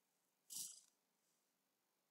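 Near silence, broken about half a second in by one short, soft breath from the narrator.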